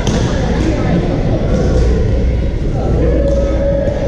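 Ambience of a busy badminton hall: a murmur of many voices echoing in the large room, with a few sharp knocks of rackets hitting shuttlecocks.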